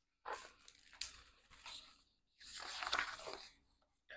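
Pages of a hardcover picture book being turned, the paper rustling and crinkling in a few short bursts and then one longer rustle about two and a half seconds in.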